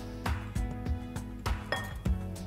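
Background music with a few light glass clinks as a glass water jug knocks against a glass mixing bowl of rice flour while water is added.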